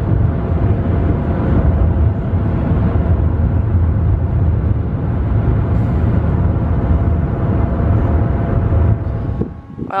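Road and engine noise inside a moving car's cabin: a loud, steady low rumble with a faint steady hum above it, which drops away about a second before the end.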